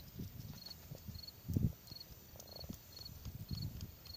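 A cricket chirping in short high pulses about twice a second, with dull low rustles and thumps close to the microphone over it, the loudest about one and a half seconds in.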